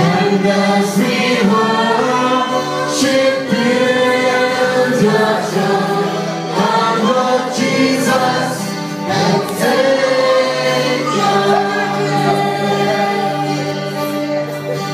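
Children and a woman singing a gospel song together into microphones, over steady low backing notes.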